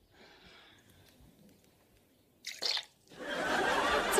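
A short, loud slurp from a teacup about two and a half seconds in, then studio-audience laughter swelling up near the end.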